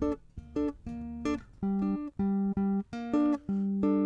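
Fazley Mammoth 7-string electric bass played fingerstyle as chords: a run of short plucked chords of several notes each, the last one held and ringing.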